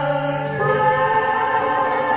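Live performance of an old Russian romance: a woman's and a man's voices singing together in harmony over acoustic guitar, holding notes and moving to a new chord about half a second in.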